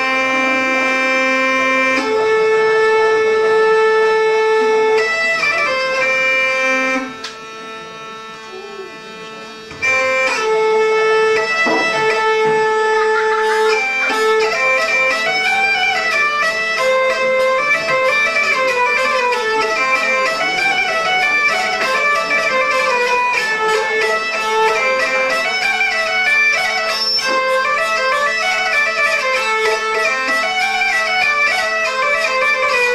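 Hurdy-gurdy playing a folk tune over a steady drone, joined by other traditional instruments. Everything drops much quieter for a few seconds about a quarter of the way in, then comes back loud. From about halfway the melody turns fast and busy over the drone, with a steady beat of light strikes.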